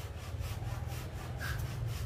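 A fast, even rasping rhythm, about five strokes a second, over a steady low hum.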